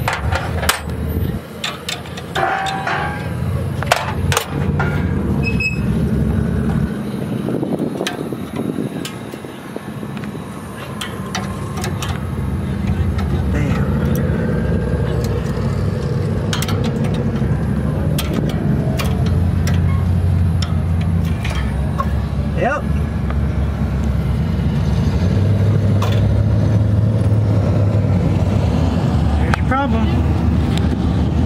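Scattered clicks and taps of hands and tools on the metal nitrous fittings of an engine under repair, over a steady low rumble of engines and indistinct voices. The rumble grows louder in the second half.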